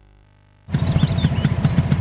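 Near silence, then from about two-thirds of a second in a classic Volkswagen Beetle's air-cooled flat-four engine running with a fast low throb.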